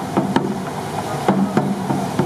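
A troupe of sansa taiko, the small drums worn at the waist, being struck together in a steady beat, about three strikes a second, each with a short low boom.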